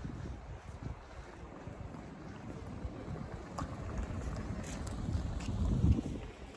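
Wind buffeting the microphone as an uneven low rumble, swelling to its loudest near the end, over open-air street ambience.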